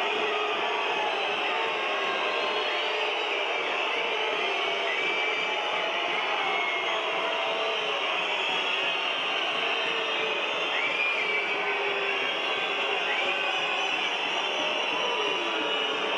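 Ice hockey arena crowd making a steady din of many voices at once.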